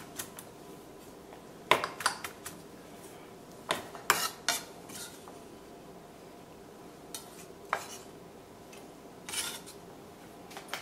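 Chef's knife chopping fresh basil on a wooden cutting board: scattered, irregular knocks of the blade on the wood, with a short clatter near the end.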